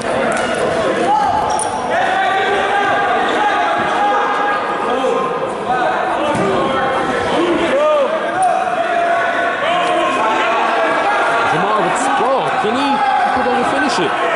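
Wrestling shoes squeaking on the mat in short rising-and-falling squeals as two wrestlers grapple and one shoots for a takedown. Spectators' and coaches' voices carry on underneath in a large gym.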